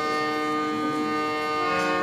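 Harmonium playing held chords, its reeds sounding steady sustained notes, with the notes changing near the end.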